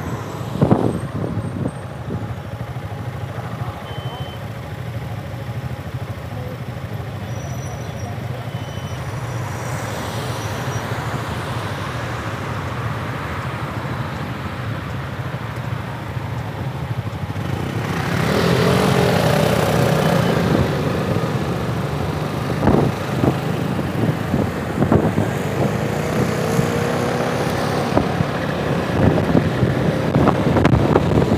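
Motorcycle engines running in traffic, heard from the rider's own bike with wind on the microphone: a steady low engine note at first, then from about 18 s louder as the engines rev and pull away, their pitch rising and falling a couple of times.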